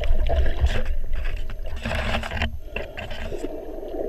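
Underwater sound heard through a GoPro's waterproof housing: a muffled low rumble of water moving around the camera, a few light knocks, and a brief rush of hissing water about two seconds in.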